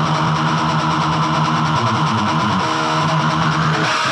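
Hard rock song at a break: electric guitar chords held and ringing with no drums, a short melodic figure about two and a half seconds in, before the full band comes back in.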